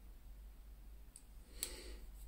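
Near-quiet room tone with a steady low hum, broken by two faint short clicks in the second half.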